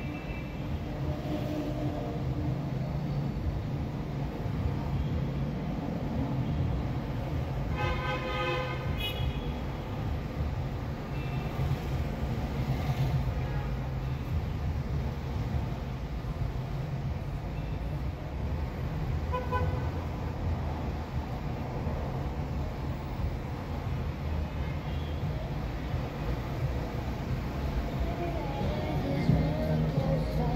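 Steady low rumble of slow, congested city traffic heard from inside a car, with a vehicle horn sounding for about a second about eight seconds in and a shorter toot near twenty seconds.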